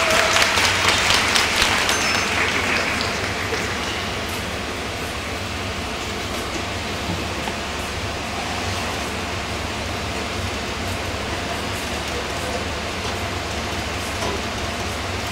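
Audience applauding for a skater, fading out over the first few seconds, then steady arena background noise with a low hum.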